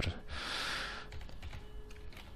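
A short, soft, breath-like hiss in the first second, followed by a handful of faint computer keyboard keystrokes as a password is typed in.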